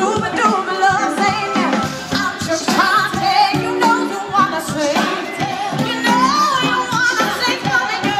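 A live band playing a soul-pop song with a woman singing lead, loud through an outdoor concert PA.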